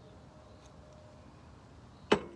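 Very quiet background with a faint low hum and a faint steady tone that fades out about a second in.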